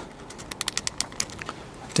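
Plastic cable tie being pulled tight through its ratchet head: a quick run of small clicks lasting about a second, thinning out toward the end.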